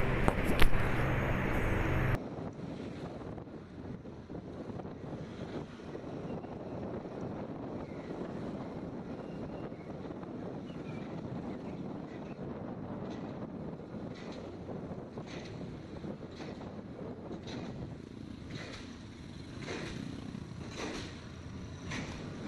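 Steady wind rush on a phone microphone mounted on a moving Honda scooter, with the scooter's road and engine noise underneath. A louder stretch cuts off abruptly about two seconds in.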